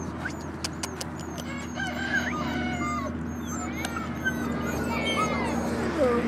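Birds calling in short, overlapping chirps and clucks, thickest from about two seconds in, over a steady low hum.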